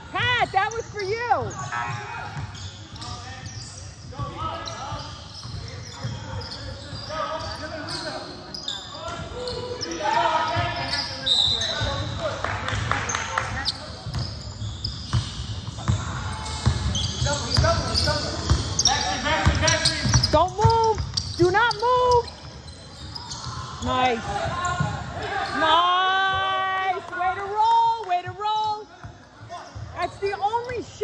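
A basketball game on a hardwood gym floor: the ball is dribbled, players' shoes thud on the court, and sneakers squeak in short rising and falling chirps, clustered in the second half. Voices call out now and then.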